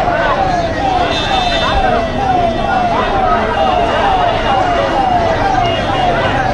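Electronic siren sounding a fast repeating falling tone, about two and a half falls a second, over a crowd's shouting and chatter.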